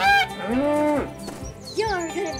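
Cartoon animal sound effects: a short goose honk falling in pitch, then one long cow moo that rises, holds and falls, over background music with a steady beat.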